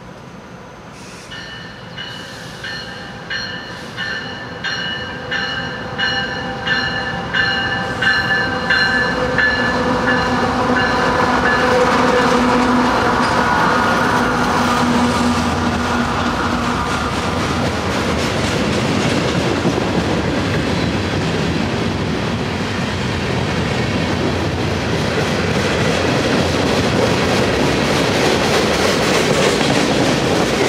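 A freight train approaching and passing. A bell rings in steady strokes, about one and a half a second, for the first ten seconds or so as the lead diesel locomotive draws near. Its engine is loudest near the middle, then the freight cars roll by with their wheels clattering.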